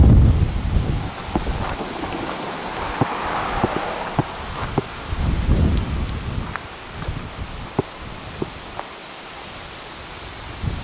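Gusty wind buffeting the microphone, rumbling hardest near the start and again about five seconds in, over a steady rustle of wind-blown leaves, with scattered small clicks.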